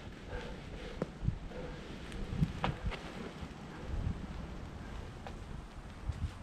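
Low wind rumble on the microphone, with a few faint scuffs and sharp clicks from a climber's body and shoes against the boulder while he mantles over its top edge.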